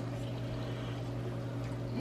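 Steady low hum over faint, even room noise.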